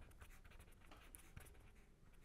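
Faint scratching of a pen writing on paper, a quick run of short, irregular strokes.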